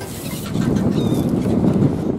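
Wind buffeting the microphone on an open beach, a dense rumbling hiss that grows louder about half a second in, with a brief thin high chirp about a second in.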